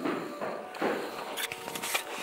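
Footsteps: a few separate steps on a hard floor, at irregular intervals.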